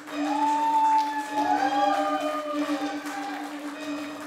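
A live band playing an ambient instrumental passage: a steady, pulsing low drone with several long gliding high tones that swell in at the start and slide and bend over it.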